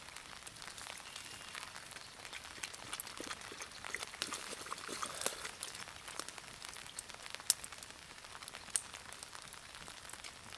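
Small wood campfire crackling with scattered pops, two sharper ones near the end, amid light rain falling on the leaves.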